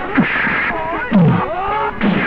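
Men shouting and grunting in a film fistfight, with two sharp louder hits, one just after the start and one a little past the middle.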